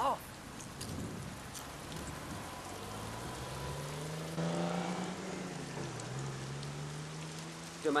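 Steady rain noise, with a low droning tone that comes in about three seconds in, rises in pitch, dips and holds until near the end.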